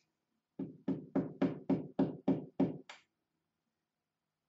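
A quick run of about nine sharp knocks, roughly four a second, starting about half a second in and stopping about three seconds in.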